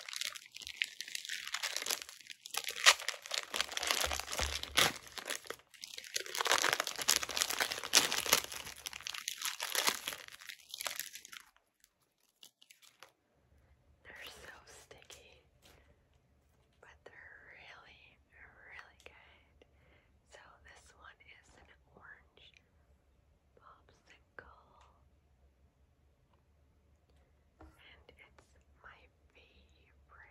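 A Creamsicle bar's paper wrapper crinkling and tearing as it is pulled open, dense and loud for about the first eleven seconds. It stops suddenly, and after a short pause only faint, scattered mouth sounds follow as the frozen bar is brought to the lips.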